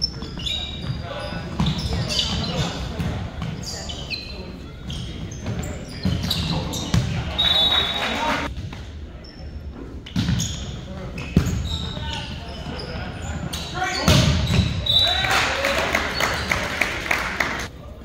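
Volleyball play on an indoor court, with sharp ball hits and short squeaks of shoes on the wooden floor echoing in a large gym. Players and spectators call out and cheer, loudest in the last few seconds.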